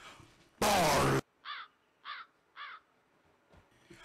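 Opening of a dancehall track: a loud, short burst with a falling low pitch just before a second in, then three short downward-sweeping caw-like calls about half a second apart.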